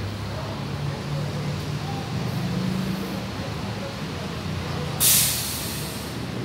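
City bus diesel engine running close by as the bus moves in, its pitch rising and then falling. About five seconds in comes a short, loud hiss of the air brakes.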